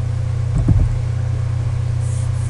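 A steady low hum in the recording's background, with a brief low-pitched bump about half a second in.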